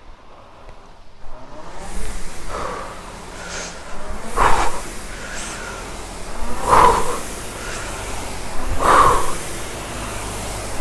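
Concept2 rowing machine's fan flywheel spinning up and whooshing, surging with each drive stroke about every two seconds, each surge paired with a hard exhale as the rower breathes out on the drive.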